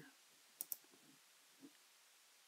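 Computer mouse button clicked twice in quick succession, a double-click a little over half a second in, with a faint soft tap near the end against near silence.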